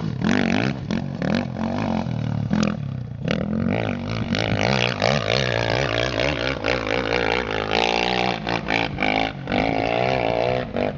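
2008 Honda CRF450R's single-cylinder four-stroke engine pinned wide open on a steep hill climb, heard as a steady droning note from a distance. Its pitch sags slowly through the middle of the climb.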